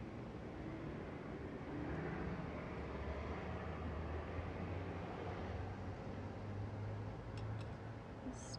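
Motor-vehicle traffic on the street: a low engine hum that swells and rises in pitch through the middle, with a few faint clicks near the end.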